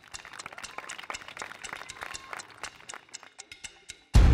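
A group of children clapping: light, scattered applause of many quick, uneven claps.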